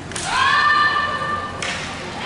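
Naginata performers' shouted kiai: a high cry that rises and is held for over a second, ended by a sharp knock about one and a half seconds in. A second cry begins at the very end.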